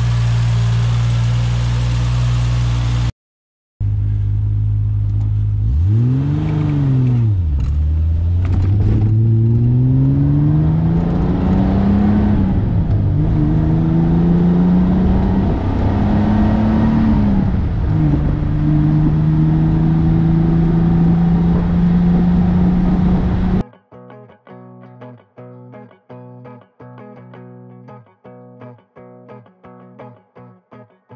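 Triumph TR6 straight-six idling steadily, its exhaust manifold leak fixed so the exhaust no longer puffs. After a brief cut, the engine is heard from inside the car's cabin being revved and accelerated through the gears: the pitch rises and drops at two upshifts, then holds steady at cruise. About three-quarters of the way through, quieter guitar music takes over.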